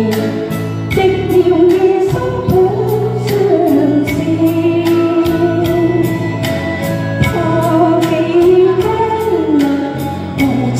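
A woman singing a slow pop ballad into a microphone over a backing track with a steady beat, amplified through a loudspeaker in a large hall.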